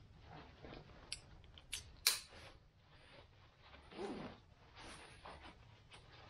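Backpack hip-belt straps being handled and fastened: webbing and fabric rustling with a few sharp clicks, the loudest about two seconds in as the buckle snaps shut, and a louder rustle of the straps being drawn tight about four seconds in.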